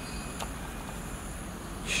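Steady outdoor background: a low even hum with a faint, high, steady insect trill, and one soft click about half a second in.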